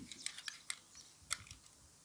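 Small blade cutting into a bar of soap: a few crisp, scattered clicks and snaps, the sharpest about a second and a quarter in, after a soft thump at the start.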